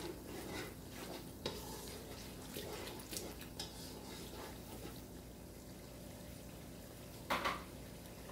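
A wooden spoon stirring thick masala in a non-stick pan, scraping and knocking against the pan in the first few seconds, over a faint steady sizzle of the masala frying. Near the end there is a brief louder sound.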